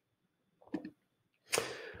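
A computer mouse button clicked once, about three quarters of a second in, with the press and release heard close together as a double tick; then a brief hiss of noise near the end.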